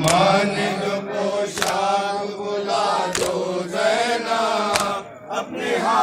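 A group of male voices chanting a Urdu noha (Muharram lament) to a slow, steady pulse. Sharp slaps of palms beating on chests (matam) land about every one and a half seconds.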